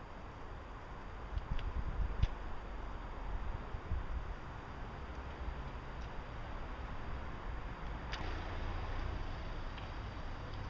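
Steady low wind rumble on the microphone, with a few sharp clicks and knocks from a car's driver door being opened and someone getting into the seat, in a short cluster about two seconds in and once more near the end.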